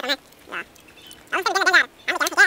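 Domestic duck quacking in quick nasal runs: a short burst at the start and a longer rapid series of quacks near the end.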